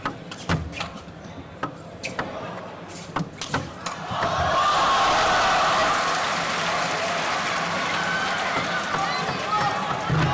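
A table tennis rally: the ball clicking off bats and table roughly twice a second. About four seconds in, the rally ends and a crowd breaks into loud, sustained cheering for the won point.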